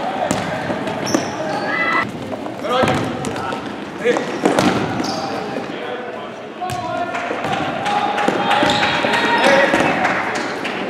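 Indoor futsal play in a gymnasium: the ball thudding off feet and the hardwood floor several times, sneakers squeaking briefly on the boards, and players and onlookers calling out over the echoing hall.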